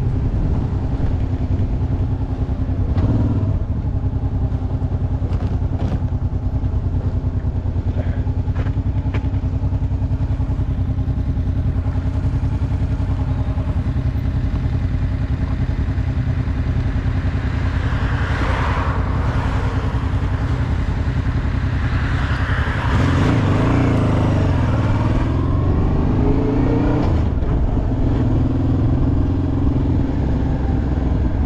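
Motorcycle engine running as the bike pulls away and rides along, a steady hum for most of the time, then its note rising and falling several times near the end as it speeds up and shifts.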